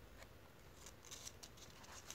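Near silence, with a few faint soft rustles and ticks about a second in from the paper pages of a hand-held book being handled.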